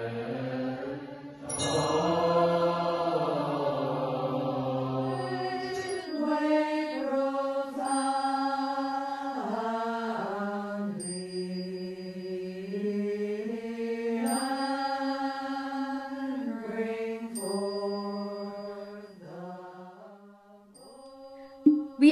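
A group of Buddhist monastics chanting together to a slow Chinese temple melody, long held notes stepping up and down in pitch. From about six seconds in, a high ringing ting sounds every few seconds over the chant.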